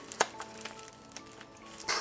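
A sharp click about a quarter second in, then a few faint ticks, from a plastic snap-off box cutter being handled over a parcel. Faint steady background music runs underneath.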